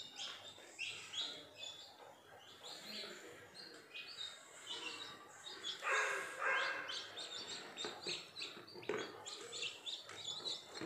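Newly hatched chicken chicks peeping, a run of short high chirps that slide down in pitch, several a second. About six seconds in, a louder rustle of the box being handled.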